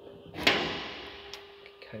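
Aluminium flatbed side toolbox being opened by its chrome paddle latch: one sharp metallic clack about half a second in as the latch releases and the door swings open, ringing away over about a second.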